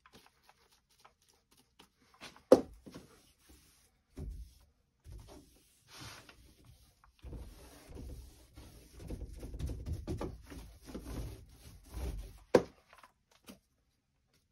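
A 4-inch microfiber paint roller worked in a plastic paint tray with small clicks, then rolled across a door panel as a low rubbing rumble for several seconds. Two sharp knocks stand out, one about two and a half seconds in and one near the end.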